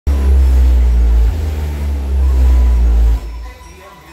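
A DJ sound system playing a very loud, deep bass tone that shifts about a second in and cuts off a little after three seconds.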